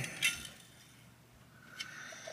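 Faint handling clicks from a hand-held metal 3D-printer pellet extruder: one light click just after the start and another near the end, with little else between them.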